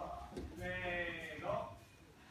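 A man's faint, drawn-out vocal sound, one sustained wavering note lasting about a second in the middle.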